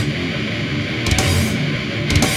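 Death metal band playing an instrumental passage without vocals: a distorted electric guitar riff, with a drum and cymbal hit about a second in.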